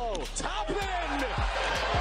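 Basketball play-by-play audio: a dunk at the rim and the arena crowd cheering, under background music with a repeating deep bass beat.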